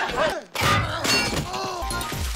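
A sudden loud crash about half a second in, with voices crying out around it.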